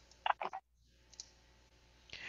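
Two short clicks, about a quarter and half a second in, followed by a faint tick and then near silence.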